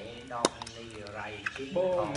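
A person's voice talking, with a single sharp click about half a second in.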